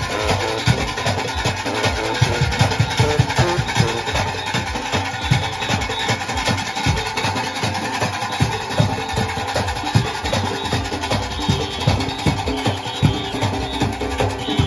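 Junkanoo band playing live: big goatskin drums beating a dense, driving rhythm with cowbells clanging over it and horns playing along.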